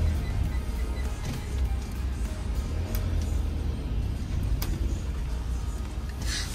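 Fiat-based motorhome's diesel engine running, heard from inside the cab as a low, steady rumble, with background music over it.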